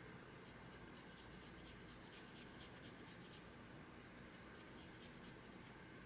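Faint scratching of a pen writing a short word on paper, a run of quick small strokes.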